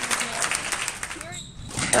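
Spectators applauding at the end of a squash rally, many quick claps that die away about a second and a half in.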